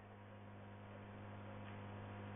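Faint, steady electrical hum from the microphone and sound system, a low buzz with a light hiss over it.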